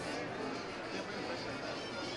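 Restaurant ambience: steady background chatter of other diners, with faint music.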